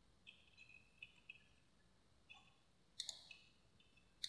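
Near silence with faint computer mouse clicks, a quick double click about three seconds in being the clearest.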